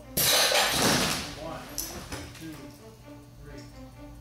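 Drop test of a dummy in a climbing harness on a straight lanyard: the dummy is released, falls and is jerked to a stop, a sudden loud burst of noise that fades over about two seconds, with a second sharp sound partway through. Soft background music runs underneath.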